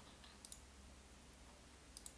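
Computer mouse button clicking over near-silent room tone: two quick clicks about half a second in, and another at the very end.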